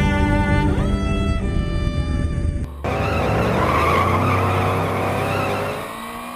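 Bowed-string music for the first two and a half seconds or so, then an abrupt cut to loud sport-motorcycle engine and wind noise from a bike-mounted camera at speed.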